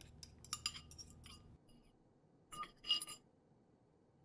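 A metal spoon scraping and tapping against a ceramic bowl in quick light clicks as beaten eggs are scraped out, then two louder ringing clinks of spoon and ceramic dishes about two and a half to three seconds in.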